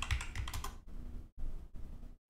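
Computer keyboard being typed: a quick run of keystroke clicks in the first second, then a few scattered keystrokes.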